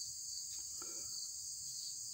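Insects chirring in a steady, high-pitched chorus.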